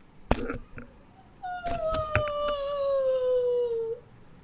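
A sharp knock, then a long howl: one held note that slides slowly down in pitch for over two seconds, with a few clicks near its start.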